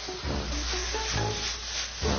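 Shredded vegetables sizzling in a stainless-steel wok over a gas flame as a wooden spatula stirs them, freshly salted to draw out their water. Faint background music runs underneath.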